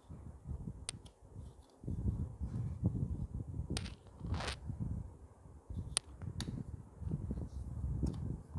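Origami paper being folded and creased by hand: soft rustling and rubbing, with a few sharp crinkles and a brief swish about halfway through.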